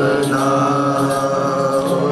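Sikh kirtan: voices hold one long sung note, 'na', over harmonium, sustained steadily with no drum strokes.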